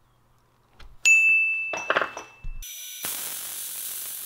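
A single bright ding about a second in that rings and fades. From about three seconds in, the MIG welding arc of a homemade metal 3D printer runs steadily, laying down a steel weld bead.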